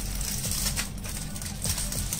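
Aluminium foil crinkling and rustling in irregular bursts as a wrapped burger is handled and unwrapped, with a steady low hum underneath.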